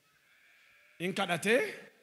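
A man preaching into a microphone: after about a second of near silence, one short spoken phrase with a wavering pitch.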